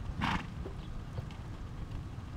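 A horse's hooves on a dirt arena as it comes down from a lope to a walk, with one short blowing snort just after the start.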